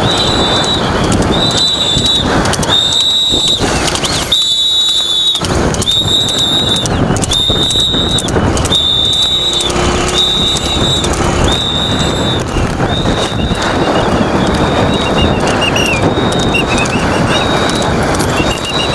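Steady rushing noise of a moving vehicle and wind, with a high-pitched tone sounding over it about once a second.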